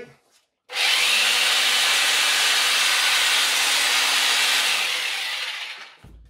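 A 620-watt corded mains hammer drill, run from a 1000-watt inverter on a 12 V battery, spins up about a second in, runs steadily for about four seconds, then winds down near the end; the inverter is carrying the drill's load.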